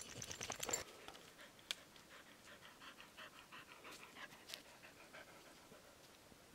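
A dog panting: faint, quick, even breaths at about four a second, open-mouthed to cool off in the heat. A brief rustle of movement comes at the very start.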